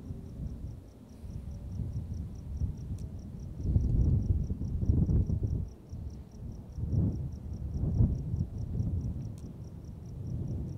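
Low irregular rumbling buffets on a handheld camera's microphone, loudest about four seconds in and again around seven to eight seconds, under a steady high-pitched pulsing of about four pulses a second.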